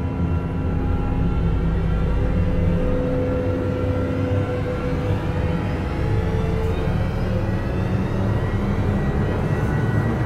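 Cinematic trailer drone: a deep, steady rumble under several long held tones, with a rising sweep building through the second half.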